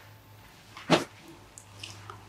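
A single short, sharp click about a second in, then a few faint ticks near the end, over a steady low hum.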